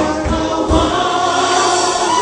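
Gospel praise team of women singing together into microphones, voices amplified in a church sanctuary. The low, beating accompaniment under them stops about a second in, leaving the voices nearly alone.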